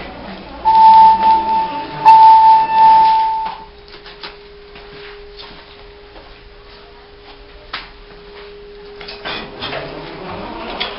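Elevator car signal tone: a loud, steady high beep lasting about three seconds, broken once briefly, then a faint steady low hum from the running hydraulic elevator that stops near the end.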